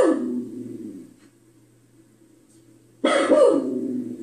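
A recorded dog bark played back for a pet dog, sounding twice: the first call peaks right at the start and fades out within about a second, and an almost identical call starts suddenly about three seconds in.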